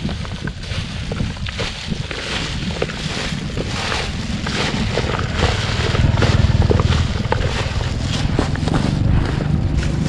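Gloved hands tossing and squeezing chopped lemongrass, chili and shallots in a plastic bowl, a crackly rustling of stalks and disposable plastic gloves, under wind rumbling on the microphone that grows stronger midway.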